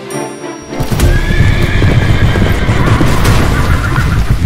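Horses galloping, a rapid rumble of hoofbeats that starts suddenly about a second in after a short musical phrase, with a horse neighing over it, against background music.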